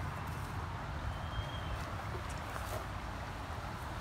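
Steady outdoor background noise, a low rumble under an even hiss, with a faint thin high whistle twice.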